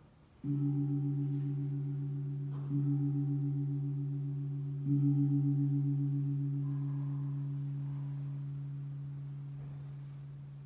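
A deep-toned bell struck three times, about two seconds apart. Each stroke rings on with a slowly pulsing hum that fades gradually. It is the consecration bell marking the elevation of the host at Mass.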